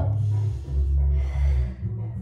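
Two long breaths from a person holding a seated forward stretch, the first about half a second and the second nearly a second long, over background music with a steady low bass line.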